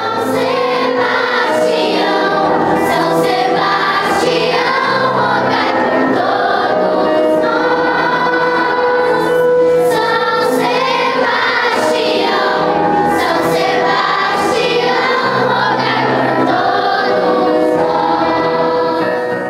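Children's choir singing together, with long held notes.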